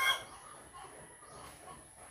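The last moment of a rooster's crow, cut off just at the start, then faint outdoor background.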